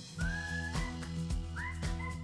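Background music: a whistled melody gliding up and down over sustained bass notes and a steady beat of about two strikes a second.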